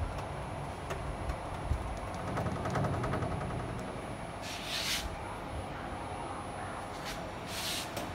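Syil X5 CNC mill's spindle head jogging down along the Z axis under handwheel (MPG) control: a steady low machine hum with faint clicking, and two short hisses, one about halfway through and one near the end.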